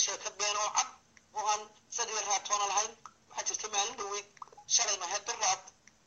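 Speech only: a man talking in Somali, in phrases broken by short pauses.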